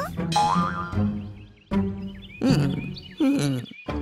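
Cartoon soundtrack music with comic sound effects: several sudden hits and a wobbling boing.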